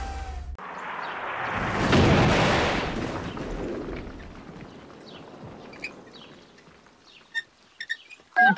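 Cartoon crash-landing effect: a rushing noise builds to a loud impact about two seconds in, then a rumble dies away over a few seconds. Faint chirps and a few small clicks follow near the end.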